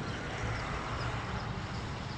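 Steady outdoor background noise: a low rumble under a soft hiss, with no distinct event.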